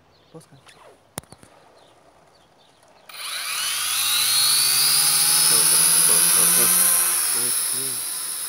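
JJRC H8C quadcopter's motors and propellers spinning up suddenly about three seconds in, with a rising whine that settles into a loud, steady high-pitched whir as the drone lifts off from the hand. It is carrying a 70 g GoPro-clone camera close to its full load.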